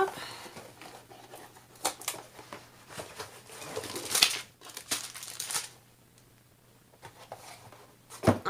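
A cardboard kit box being opened and tipped out, giving irregular knocks and scrapes, with plastic crinkling as a plastic-wrapped rolled canvas and bags of drills slide out. The handling grows busier about four seconds in, then goes quiet for the last couple of seconds.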